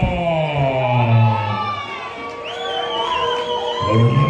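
A ring announcer's long, drawn-out sing-song call over a microphone, the pitch sliding down on the held syllables, over a cheering arena crowd.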